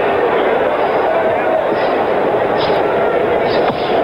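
Arena crowd noise from a boxing match, a steady din of many voices, with one sharp knock near the end.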